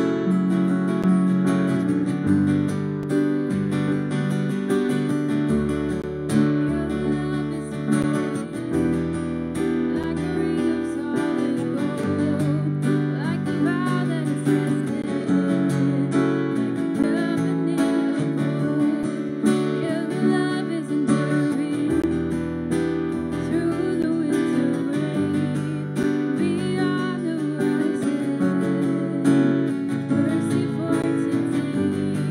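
Live worship song: strummed acoustic guitar and a Roland FP-80 digital piano, with voices singing.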